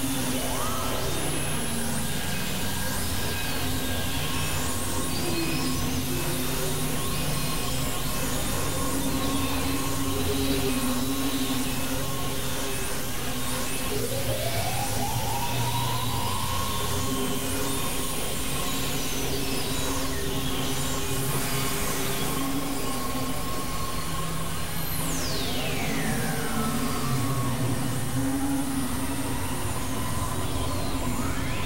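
Experimental synthesizer drone music from a Novation Supernova II and Korg microKorg XL: a steady, noisy drone with shifting low held tones. A tone glides upward about halfway through, and a high sweep falls steeply near the end.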